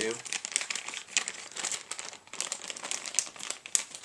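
Plastic soft-bait packaging being handled, crinkling with many irregular sharp crackles as the bag is squeezed and moved about.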